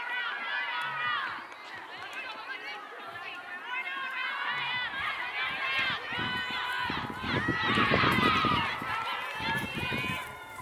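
Several distant high-pitched voices shouting and calling out over one another across an open playing field during a game, loudest about seven to nine seconds in, where a low rumble joins them.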